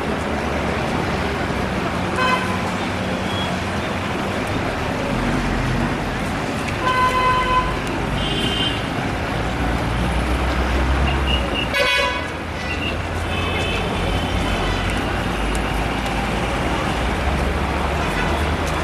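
Steady road-traffic rumble with several short vehicle horn toots, the loudest about twelve seconds in.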